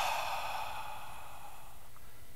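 A long, slow breath out, breathy and voiceless, fading away over about a second and a half.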